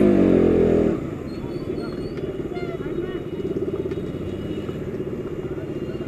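Motorcycle engine heard from the rider's seat. It runs loud and higher until about a second in, then drops away and keeps running steadily at low revs as the bike rolls slowly.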